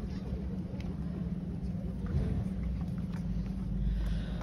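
Room tone of a large event hall: a steady low hum with a low rumble, growing slightly louder toward the end, and only faint scattered sounds above it.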